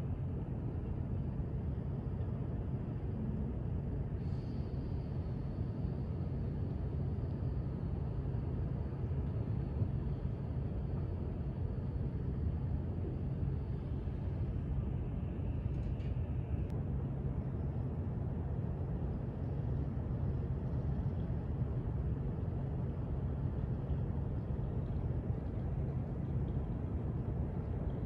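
Steady low rumble of city harbor background noise, with no distinct events. A faint thin high whine sits over it from about four seconds in until about fourteen seconds in.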